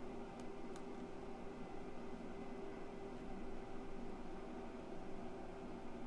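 Steady low hum of a desktop computer with two faint mouse clicks about half a second in.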